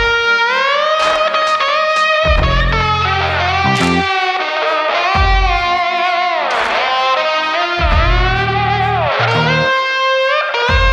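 Blues-rock song led by electric slide guitar, its notes gliding up and down with one deep swoop down and back up about two-thirds of the way through, over low bass notes that come and go.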